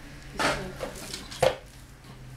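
Plastic toys being handled and knocked together: a short rattling clatter about half a second in, then one sharp knock a second later.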